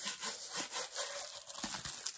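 Plastic wrapping on a rolled diamond painting canvas rubbed and twisted in the hands, giving quick, uneven, scratchy rubbing strokes.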